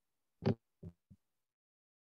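Three brief thumps picked up through a video-call microphone: a sharp, louder one about half a second in, then two softer ones in quick succession, with gated silence between.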